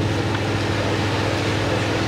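A steady low mechanical hum with an even hiss over it, cutting off suddenly near the end.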